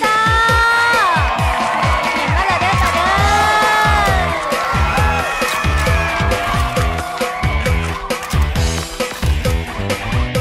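Luk thung song playing, with a steady drum-and-bass beat and a melody gliding above it.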